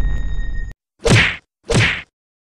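Edited-in end-screen sound effects: a loud sustained rumble with a few steady high tones cuts off abruptly under a second in, then two short swish-and-whack transition hits follow about half a second apart.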